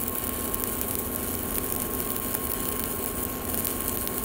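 Shielded metal arc welding with a 3/32-inch 7018 electrode at 80 amps on steel pipe: the arc crackles steadily and evenly as the fill pass is carried uphill.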